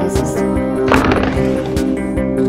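Music with a steady beat, and about a second in a short, loud scrape of a snowboard sliding along a metal rail.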